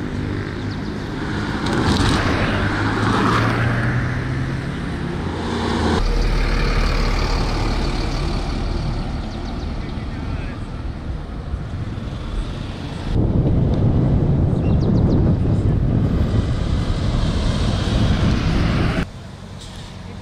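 Road traffic: minibuses, a bus and a lorry driving past on a tarmac road, engines running and tyres on the road, with a low engine hum near the start. The sound breaks off and changes abruptly several times.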